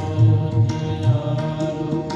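Sikh kirtan music: steady harmonium-like held chords over repeated tabla strokes.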